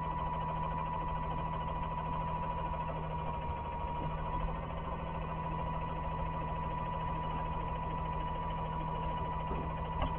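Side-loading garbage truck's engine idling steadily, with a thin steady high whine running over the low hum, heard through a security camera's microphone.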